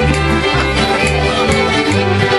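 Live acoustic bluegrass jam: a fiddle plays a tune over strummed guitar, with a low bass line stepping between two notes in a steady rhythm.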